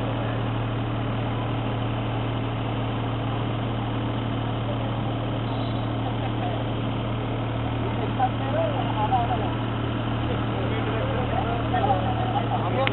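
A steady low engine hum, like an idling motor, with faint voices talking in the background in the second half.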